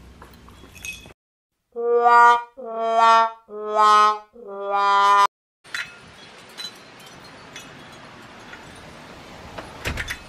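Comic 'sad trombone' sound effect: four brass notes stepping down in pitch, the last one held longest, cut in cleanly over dead silence. After it comes a low outdoor background with a few light taps.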